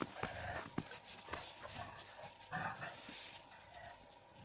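An adult dog and puppies playing on snow: two short yelps, about a quarter-second in and about two and a half seconds in, amid scattered crunchy steps and scuffles.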